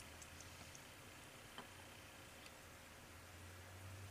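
Near silence with a faint low hum and a few faint ticks of the steel parts of a Winchester Model 94AE lower tang assembly being handled, the clearest about a second and a half in.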